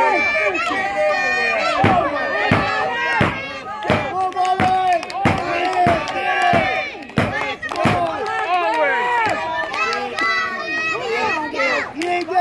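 Wrestling crowd shouting and chattering, many voices at once, including children. Through the middle there is a steady run of sharp hits, about three every two seconds, like rhythmic clapping or stomping from the crowd.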